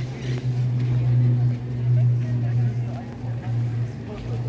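A steady low hum of a running motor or engine, with a fainter higher tone above it, under the chatter of people around.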